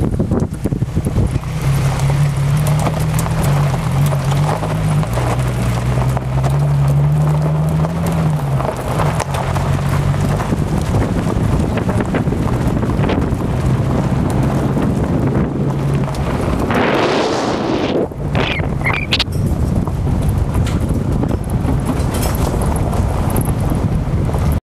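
Wind buffeting a phone's microphone: a loud, steady rumble and rush. A low hum runs underneath for roughly the first two-thirds, and a brief louder rush comes about 17 seconds in.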